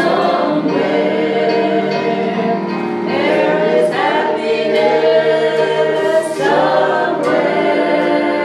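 Two women and a man singing a gospel song together into microphones, several voices at once in sustained phrases.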